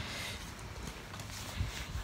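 Sneakers stepping and scuffing on a concrete driveway, with one sharper thump about a second and a half in.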